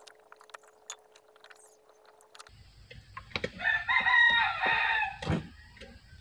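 A rooster crowing once, a single call of about two seconds starting around three seconds in. Before it there are only a few faint clicks.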